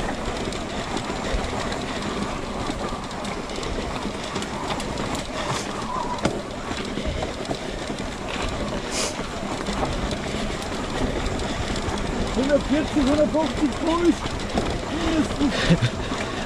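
E-mountain bike rattling over a cobblestone climb, heard as a steady rumbling noise with wind on the microphone. In the last few seconds a run of short wavering pitched sounds rises above it.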